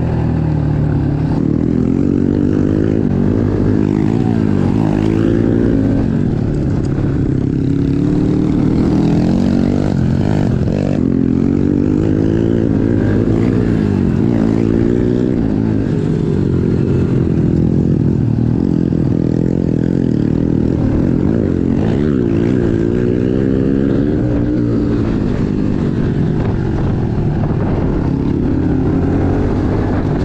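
Honda CRF110 dirt bike's small single-cylinder four-stroke engine, heard close from onboard, revving up and down as it is ridden hard around a dirt track, its pitch rising and falling every couple of seconds with throttle and gear changes.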